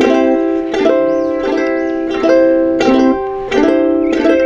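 Ukulele strummed in ringing chords, a new chord struck about every 0.7 seconds, with no voice.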